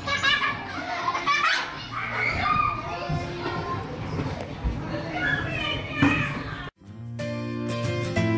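Young children playing, their high-pitched voices calling and squealing over a busy background. Near the end the sound cuts abruptly to strummed acoustic guitar music.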